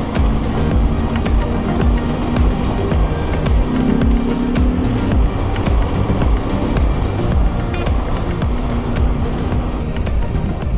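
Motorcycle engine and wind rush heard from the rider's own bike on a gravel road, with many brief crackles and knocks, under background music.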